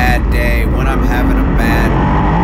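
USAC sprint car's V8 engine at racing speed, heard from the onboard camera. Its pitch rises and falls in short pulses as the throttle is worked on the dirt oval, over a heavy low rumble.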